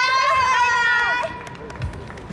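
High-pitched young women's voices calling out together in long held notes, cutting off a little over a second in; then quieter footsteps as the performers run across the stage.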